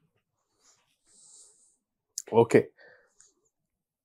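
Mostly silence, broken by a faint breathy hiss about a second in and a short mouth click, then a man says "okay".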